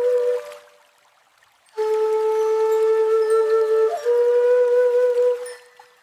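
AI-generated shakuhachi-style Japanese flute playing slow, held notes. A first note fades out within the first second; after a short pause a long low note sounds, steps up slightly about four seconds in, and fades away near the end.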